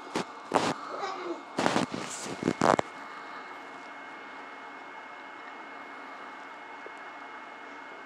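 A quick run of about six sharp knocks or thumps in the first three seconds, with a brief faint voice among them, then steady quiet room tone.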